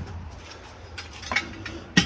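Light clicks and clinks of a steel jack stand being handled and set on a concrete floor, with a sharper metallic clink near the end.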